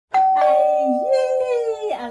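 Two steady chime-like tones held for nearly two seconds, with a woman's voice holding a long note that steps up about a second in and then slowly falls.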